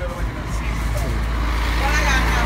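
Steady low machine hum, fuller and slightly louder from about halfway through, with faint voices in the background.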